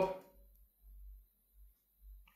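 Near silence: room tone, with a faint low rumble about a second in.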